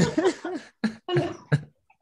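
A man laughing in a run of short, breathy bursts that fade toward the end.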